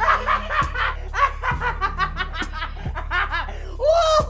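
A man laughing loudly in quick repeated bursts, with a louder burst near the end, over background music.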